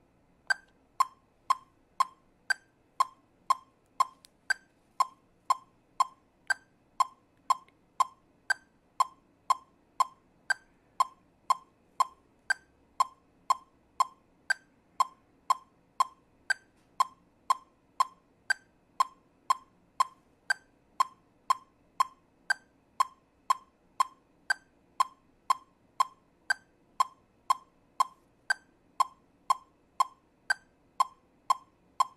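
Metronome clicking steadily at 120 beats per minute, two clicks a second, with a higher-pitched accented click on every fourth beat marking the start of each 4/4 bar.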